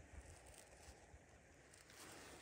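Near silence, with only faint background noise.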